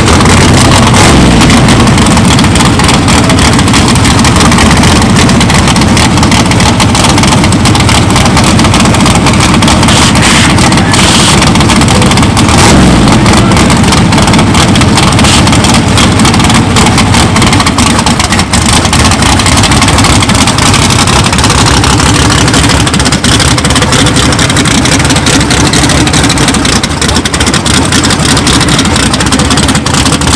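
Fox-body Mustang notchback drag car's engine running loud and steady at close range.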